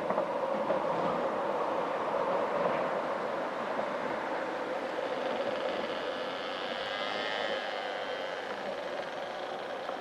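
Steady outdoor background noise with a constant low hum, with faint wavering higher tones for a couple of seconds past the middle.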